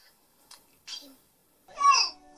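A young child's short, high-pitched vocal squeal near the end, a meow-like cry, after a couple of faint brief sounds.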